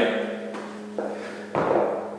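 A dumbbell lowered from overhead and set down on a rubber floor mat: a light knock about a second in, then a dull thud about half a second later.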